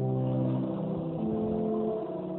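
Organ playing slow, sustained chords, the held notes moving to new pitches every half second or so.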